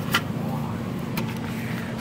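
A carded toy package being taken out of a vending machine's delivery bin: a short click just after the start and another about a second later, over a steady low hum.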